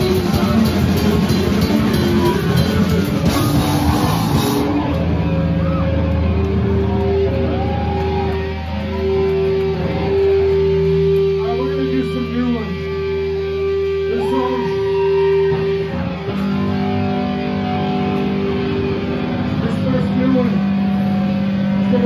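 A live punk band playing loud with drums and distorted guitar, cutting off about four seconds in. Electric guitar tones then ring on through the amplifier, long held notes with a low hum beneath, while voices in the crowd talk.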